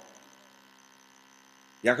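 Faint steady electrical hum with a row of overtones, heard in a pause in the reading; a man's voice comes back in near the end.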